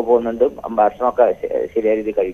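Speech only: a caller's voice coming through a telephone line, narrow-sounding.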